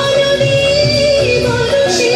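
A group of women singing a long-held, ornamented melody in unison, with drums and a keyboard-type instrument accompanying.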